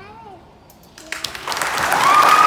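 A concert band's last chord fades away, and about a second in the audience starts applauding, with a voice cheering near the end.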